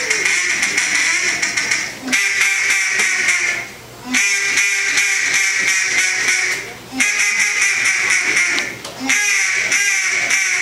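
Duck call blown by mouth in a calling contest routine: runs of rapid quacks, several notes a second, in four long strings broken by short pauses for breath.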